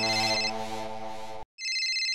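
Smartphone ringtone for an incoming call, a steady electronic melody. It cuts off about one and a half seconds in, then resumes after a short gap in a higher register.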